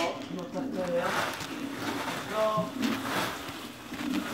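Faint voice sounds, a few short vocal snatches, over low uneven scuffing noise.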